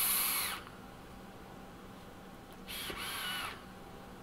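Air hissing through the airflow slots of a Wotofo Serpent rebuildable tank atomizer as it is vaped, with a faint wavering whistle from the partly closed airflow. The first draw ends about half a second in, and a second, shorter draw comes near three seconds.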